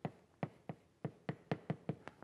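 Chalk tapping against a blackboard during writing: a quick, irregular series of about eight sharp taps that come closer together in the second half.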